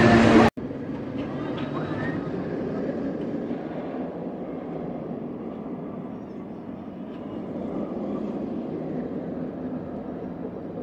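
Steel inverted roller coaster train running along its track: a steady low rumble that swells a little near the end. Before it, a louder burst of other sound cuts off abruptly half a second in.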